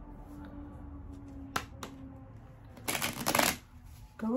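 A deck of tarot cards being shuffled: a couple of light card clicks, then a short, loud burst of rapid shuffling about three seconds in.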